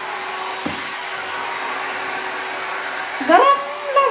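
Handheld hair dryer running steadily with an even whir and a low hum, used while straightening hair. Near the end a person's voice rises briefly over it.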